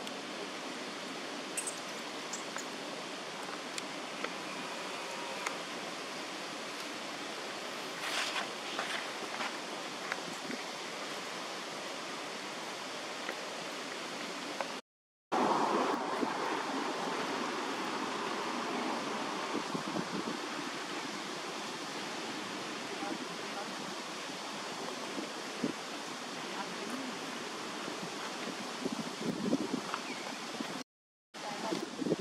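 Steady outdoor background noise of wind and nearby water, an even hiss with no clear single event. It cuts out briefly about halfway through and comes back a little louder.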